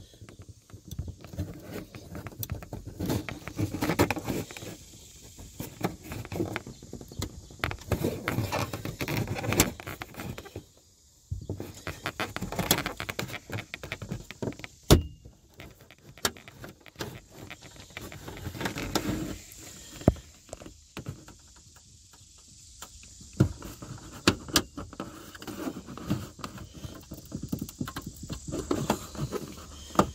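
Plastic upper dash trim panel of a Cadillac STS being pried loose with a trim tool: scraping and rubbing of plastic on plastic, with a few sharp clicks as retaining clips pop free.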